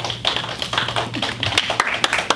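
Scattered applause from a small group: many quick, irregular hand claps.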